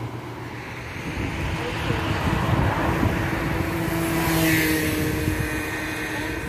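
A car passing close by on the street, its engine and tyre noise swelling for a few seconds and easing off near the end.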